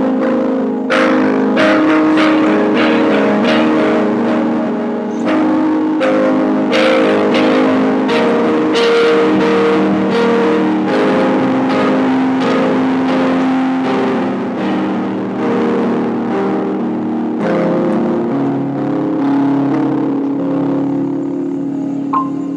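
A recorded song playing: sustained chords with a steady beat.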